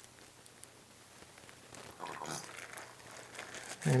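A plastic bag of wet hydrostone plaster slurry being squeezed out through a cut corner into a silicone mold. There is faint crinkling of the bag and soft squishing of the slurry, mostly in the second half.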